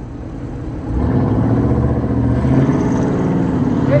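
A motor vehicle engine running close by. It swells about a second in and then holds a loud, steady, deep note.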